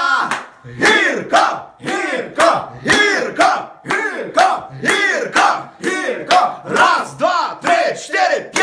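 Several men shouting in unison in a steady rhythm, about two loud shouts a second, each rising and falling in pitch.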